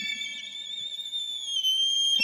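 Solo violin holding a soft, very high sustained note with vibrato, gliding down a little about three-quarters of the way through.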